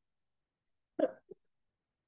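A man's single short vocal sound, a brief voiced syllable or grunt, about a second in, with silence around it.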